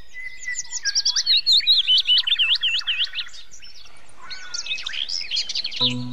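A songbird chirping in fast runs of high, swooping notes: one burst of about three seconds, then a short pause, then a second burst. Music with steady low notes comes in near the end.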